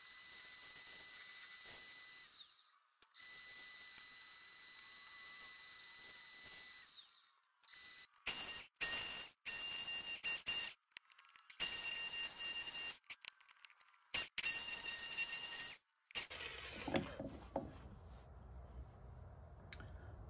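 Faint power-tool sounds in short edited clips. A steady high whine fills the first several seconds while the wood lathe spins the blank. After that come choppy, abruptly cut bursts of motor noise with a different high tone as a jigsaw cuts out the core.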